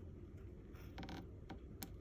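A few faint, short clicks and scratches from a pen on paper, over low room tone.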